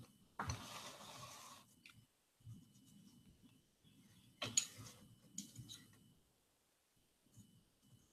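Faint scraping and handling sounds of a clay teapot being worked by hand. A scrape of about a second comes near the start and a shorter one a little past halfway, with small light knocks between.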